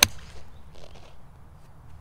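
A single sharp crack of a golf iron striking a ball off the fairway turf, right at the start, with a brief ring after it.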